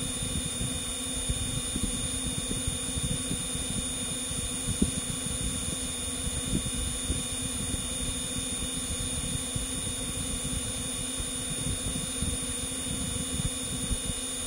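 DJI Avata 2 FPV drone sitting armed on the ground with its motors and propellers spinning at idle: a steady whine of several pitches over an uneven low rumble.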